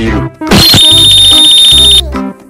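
Background music, then about half a second in a loud, steady high-pitched electronic beep like an alarm that holds for about a second and a half.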